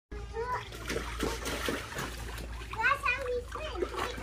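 Water splashing several times, with a child's high voice calling in the background.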